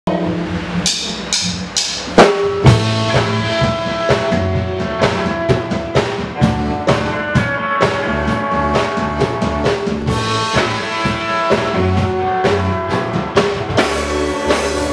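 Live synthpop band playing an instrumental intro on drum kit, electric guitar and synthesizer keyboard, with a steady drum beat. A few single drum hits open it, and the full band comes in with a loud strike about two seconds in.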